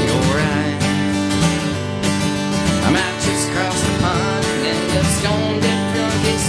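Acoustic guitar strummed steadily in a country-blues style, with a harmonica played over it in wavering, bending notes.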